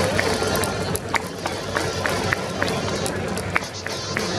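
Ballpark crowd clapping in a steady rhythm, about three claps a second, along with cheering music.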